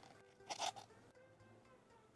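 A short crunching scrape of styrofoam cups being pressed into a bowl of acetone about half a second in, over faint background music.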